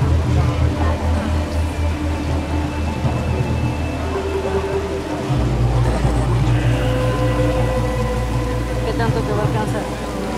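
Volcano-show soundtrack played over loudspeakers: music over a pulsing bass beat that turns into a deep, steady low sound about five seconds in, as the flames flare up across the volcano.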